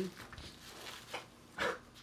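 Quiet handling of machined aluminium satellite frame parts being set down and moved on a rubber anti-static mat, with a brief louder knock or scrape about a second and a half in.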